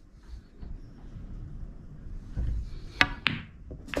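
An 8-ball pool shot played with screw (backspin): two sharp clicks about a quarter-second apart, the cue tip striking the cue ball and the cue ball hitting the object ball, then another ball click near the end.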